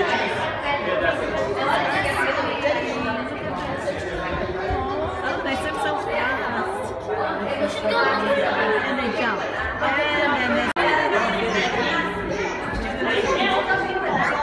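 Indistinct chatter of several voices echoing in a large indoor hall.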